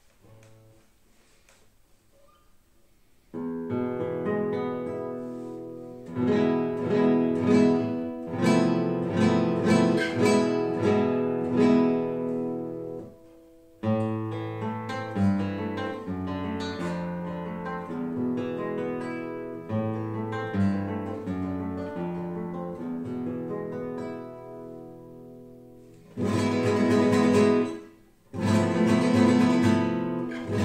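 Solo Spanish classical guitar by Ricardo Sanchis Nácher (c. 1945–50, spruce top) being played. After a few quiet seconds come plucked melody notes over chords and ringing bass, with a short pause in the middle. Near the end come loud rapid strummed chords, broken by a brief stop.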